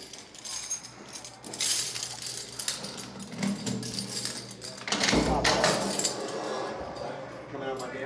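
Keys rattling in the lock of a heavy security door as it is unlocked and pulled open, with clicks and clinks of metal. There is a heavy thud about five seconds in.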